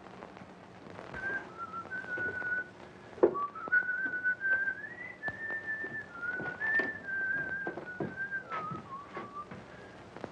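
A man whistling a slow tune, held notes stepping up and down, starting about a second in and stopping shortly before the end. Scattered knocks of footsteps and a cane on stairs run under it, the loudest about three seconds in.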